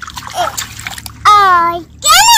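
Splashing and trickling as hands grope through shallow muddy water, then a child's voice calls out once, loud and held with a slightly falling pitch, a little past halfway.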